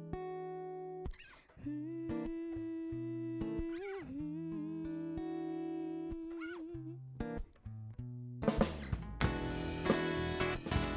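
Live band opening a pop song: guitar notes and chords ringing out and held, one note bending in pitch about four seconds in. Drums and bass come in about eight and a half seconds in, filling out the sound.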